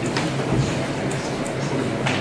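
Crowded courtroom room noise: a steady low hum and murmur, with a few light clicks and a low thump about half a second in.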